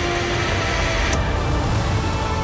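Background music with sustained notes, over a hiss from a La Marzocco KB90 espresso machine's group head that cuts off suddenly about a second in.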